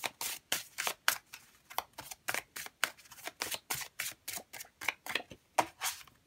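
A deck of oracle cards shuffled by hand: a quick run of short card snaps, about four a second, that stops just before the end.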